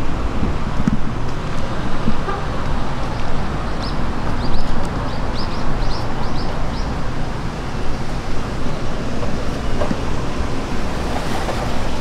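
Steady outdoor background rush, like passing traffic and wind on the microphone, with a short run of quick high chirps about four to seven seconds in.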